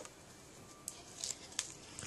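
Faint handling noise from paper crafting: a few light ticks and soft rustles as cardstock and a cellophane treat bag are handled.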